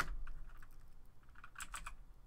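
Computer keyboard typing: one key press right at the start, then a quick run of about four keystrokes near the end.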